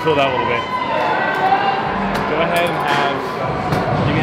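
Indistinct talking: several voices, none picked out as clear words.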